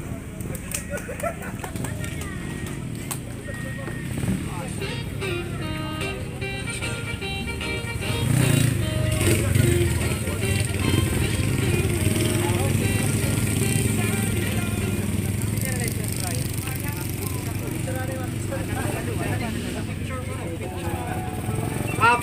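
Motorcycle engines running steadily near the crowd, louder from about eight seconds in, with music and crowd chatter in the background.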